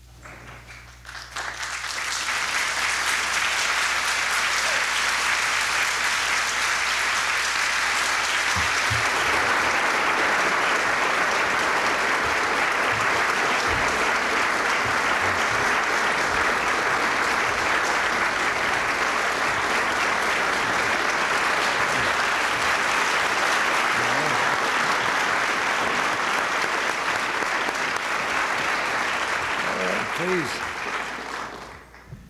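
A large indoor audience applauding steadily. The applause swells up about a second or two in, holds for nearly half a minute and eases off near the end.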